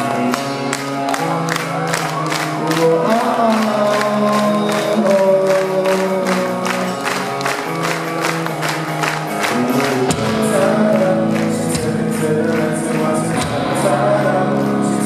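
Rock band playing live: drums keep a steady beat of about two to three strikes a second under sustained chords, with voices singing. The low end fills out about ten seconds in.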